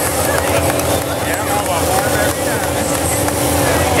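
A steady low rumble with a constant droning hum, under faint chatter of people.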